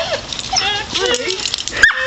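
A dog whining and yipping in excitement, a run of short, high, sliding cries, with a sharp click near the end.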